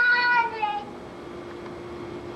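A single high-pitched cry lasting under a second at the very start, falling slightly in pitch as it fades, over a faint steady hum.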